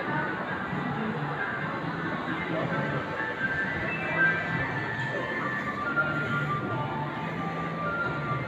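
Background music playing over a shopping mall's sound system, over the general noise of a large indoor space.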